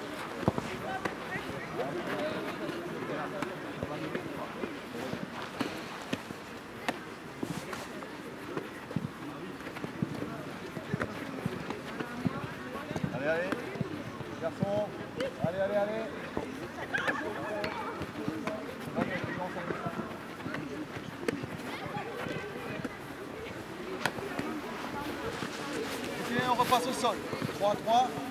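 Indistinct voices of young football players calling across a pitch, with scattered thuds of footballs being kicked and played.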